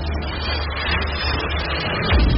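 Intro whoosh sound effect: a steady, dense rush of noise over a low rumble, building toward the logo reveal of an animated channel ident.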